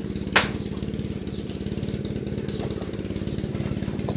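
A small engine running steadily at idle, an even low chugging, with one sharp knock about a third of a second in.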